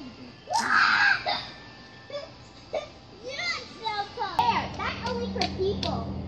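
Young children's voices: a loud cry about half a second in, then high-pitched calling and chatter with no clear words.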